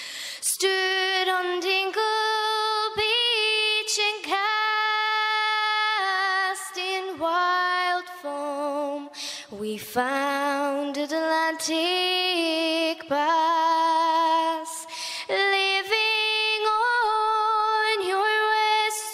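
A young woman singing a slow Irish folk ballad solo and unaccompanied, with vibrato on the held notes and short breaths between phrases.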